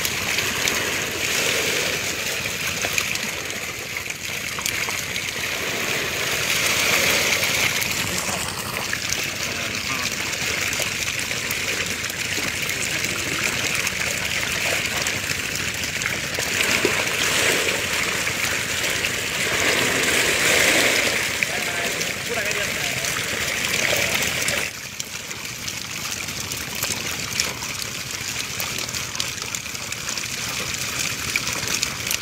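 Water splashing and sloshing as men wade and work fish out of a bamboo fence trap by hand and basket, with voices talking. The sound drops quieter about 25 seconds in.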